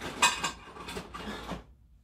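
Empty metal tin cans clattering as they are picked through and handled, with a sharp knock about a quarter second in. The clatter stops about two thirds of the way through.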